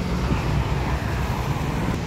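Steady low rumble of road traffic, with a faint hiss that swells slightly in the middle.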